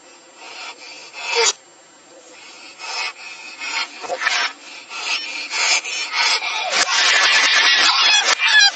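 Scratchy rubbing and rustling noise, played backwards. It is faint and patchy at first, then grows steadily louder and denser near the end.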